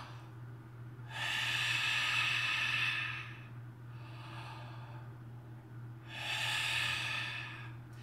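A man taking two long, deep breaths through a wide-open mouth, one starting about a second in and the other about six seconds in, each lasting about two seconds. This is a diaphragm breathing exercise.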